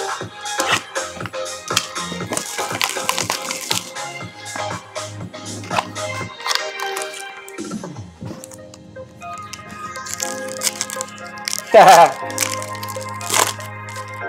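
Background music with a beat and a steady bass line, with a short laugh near the end.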